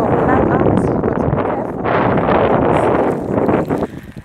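Wind blowing across a phone's microphone outdoors: a loud, low rushing noise with a brief dip about two seconds in.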